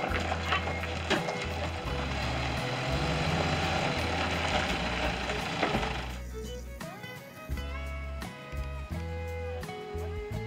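A forklift's engine running as it drives over gravel. About six seconds in, this gives way to plucked acoustic guitar music.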